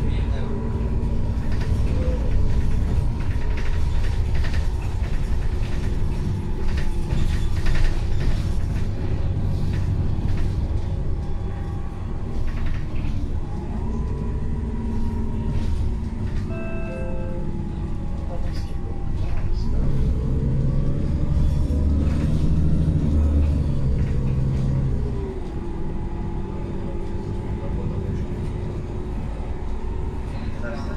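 Inside a moving Solaris Urbino 12 III CNG city bus, its Iveco Cursor 8 CNG inline-six engine running under a Voith automatic gearbox, with road rumble. The engine note climbs and drops back several times as the bus pulls and shifts. A short tone sounds about halfway through.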